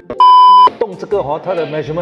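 A single loud, steady electronic bleep lasting about half a second, of the kind dubbed over speech in editing to censor a word; talking and laughter follow.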